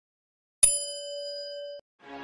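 Bell 'ding' sound effect for a subscribe-bell animation: a single struck bell tone about half a second in, ringing steadily for about a second before it cuts off suddenly.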